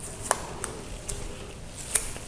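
Plastic tamper seal being peeled and torn off a small glass bottle by hand: a few faint crinkles and ticks, with a sharper crackle at the end as the strip comes away.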